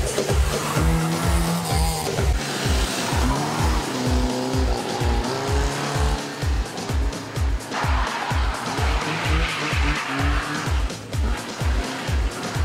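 Renault 5 engine revving up and down as the car is driven hard through a cone slalom, with its tyres squealing in two spells: briefly a few seconds in, and again from about eight seconds. Music with a steady beat plays throughout.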